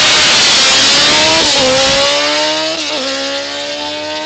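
Open-wheel single-seater race car launching from the start line at full revs and accelerating away, its engine note climbing, dropping at two upshifts about one and a half and three seconds in, and growing fainter as it pulls away.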